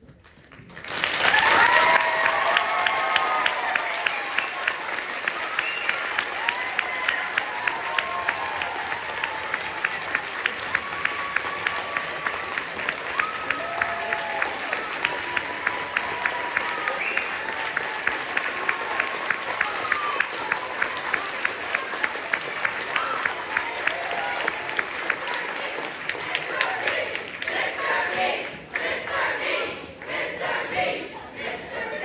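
Audience applauding and cheering: the clapping bursts in about a second in, with whoops and shouts over it and one pair of hands close by clapping about twice a second. It thins into crowd chatter near the end.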